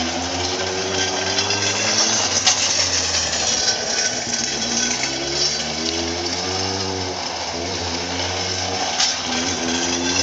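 Motorcycle engine on a slide-bike training rig, revving up and easing off several times as the bike circles and leans, its pitch rising and falling with the throttle.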